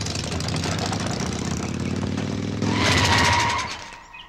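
Auto-rickshaw engine running steadily, with a louder, higher-pitched burst with a steady high tone about three seconds in before the sound fades away.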